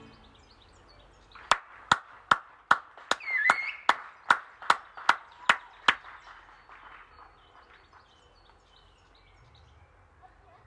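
Hands clapping after a song: about a dozen loud, evenly spaced claps, roughly two and a half a second, starting about a second and a half in and stopping about six seconds in. Faint bird chirps follow.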